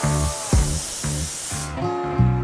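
Compressed-air spray gun hissing as it sprays coating onto a car body, over background music with a steady beat; the spray hiss stops near the end.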